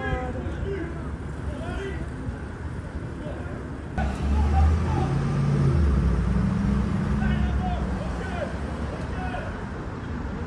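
Street traffic noise: a motor vehicle's engine comes in about four seconds in, running with a low hum for a few seconds before easing off, over distant voices.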